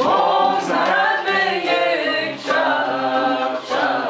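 Group of voices singing a Persian tasnif together, with tar and setar playing along. The phrases are loud and steady, and new phrases start about two and a half seconds in and near the end.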